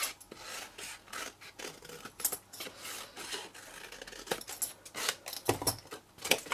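Scissors cutting through cardstock in a run of short snips at an irregular pace, with a louder knock near the end.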